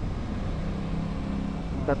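Aprilia RS 660's parallel-twin engine running at steady revs while the bike is ridden, under a low wind rumble on the onboard microphone.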